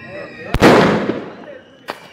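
Garra de tigre firecracker exploding, blowing apart the tablet it was set on: a single very loud blast about half a second in that trails off over about a second, then a short sharp crack near the end.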